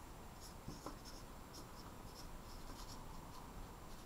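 Whiteboard marker writing a word on a small whiteboard: a run of short, faint strokes.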